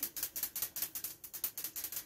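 Faint, rapid clicking, roughly ten clicks a second, going on steadily.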